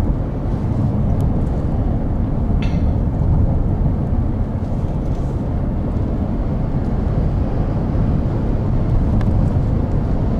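Steady low road and engine rumble of a car driving, heard inside the cabin, with a few faint ticks.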